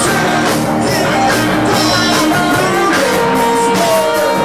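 Rock band playing loudly live in a small room: electric guitars with sustained and sliding notes over a drum kit.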